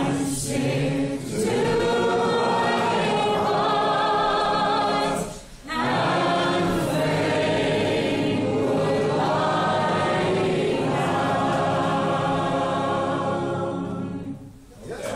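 Unaccompanied folk song sung by a woman with the audience joining in chorus, many voices together in long held phrases, with a short pause for breath about five and a half seconds in.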